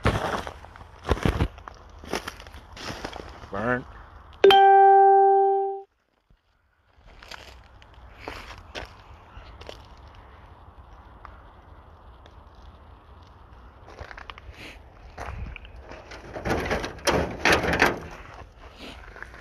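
Footsteps and handling crunching and knocking in burned debris, with a loud steady electronic beep a little over a second long about four and a half seconds in. A busier run of crunches and knocks comes near the end.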